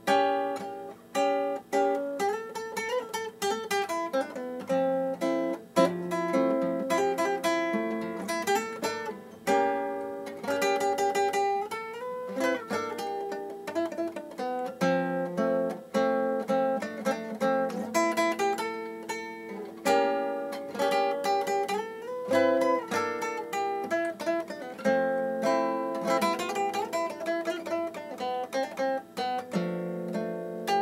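Solo nylon-string classical guitar played fingerstyle: a continuous piece of plucked notes and chords that ring on, with a few notes sliding in pitch.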